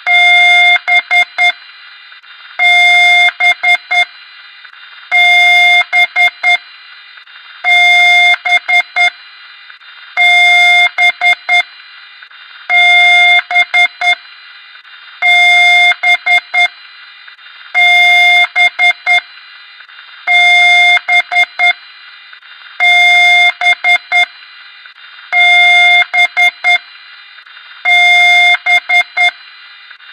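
Electronic alarm beeping in a repeating pattern: one long beep followed by about four quick short beeps, about every two and a half seconds, over a steady hiss.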